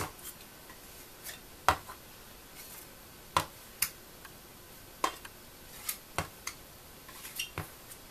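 Scattered sharp clicks and knocks, about nine in all at irregular gaps of roughly a second, from a chocolate mold and scraper being handled and set down on a work surface.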